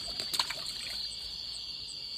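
Steady high-pitched chorus of night insects, with a fainter, higher chirp repeating about three times a second. A few light clicks come in the first half-second.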